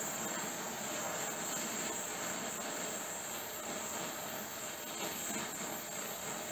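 Oxy-acetylene torch flame hissing steadily while it heats an aluminium part, with the oxygen on, burning off the soot coating to anneal the metal.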